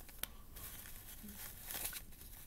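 Faint rustling and crinkling of a disposable pleated paper surgical mask being pulled over the face and its ear loops hooked behind the ears. There is one light click about a quarter of a second in, and a brief louder rustle near the end.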